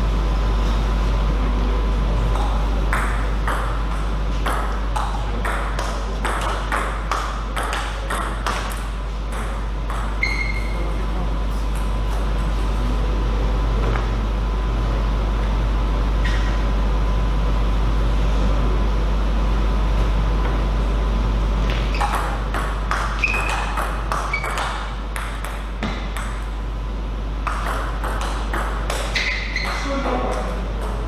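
Table tennis ball knocked back and forth between bats and table: runs of sharp clicks, several a second, separated by pauses between rallies. A steady low hum runs underneath.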